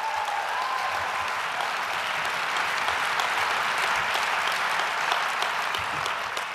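Audience applauding steadily, a dense patter of many hands clapping.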